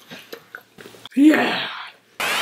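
A child's short wordless vocal outburst about a second in, loud at first and fading over under a second, after faint mouth and chewing noises.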